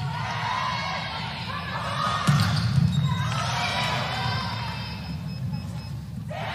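Sounds of an indoor volleyball rally: sneakers squeaking on the court floor and players' voices calling over a low hall rumble, with one sharp ball contact a little over two seconds in.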